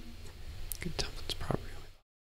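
Faint whispered muttering from a man at his desk, with a few small mouth clicks.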